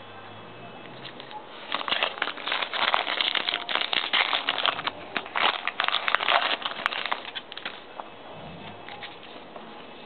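Foil wrapper of a trading-card pack crinkling and tearing as it is opened, a dense crackle that starts nearly two seconds in and lasts about six seconds.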